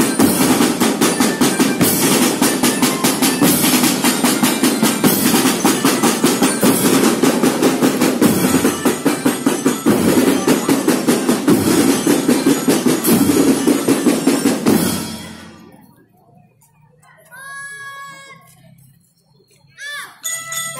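A school drum band playing a loud, steady marching rhythm on drums, stopping suddenly about three-quarters of the way through. A short, faint call is heard after the drums stop.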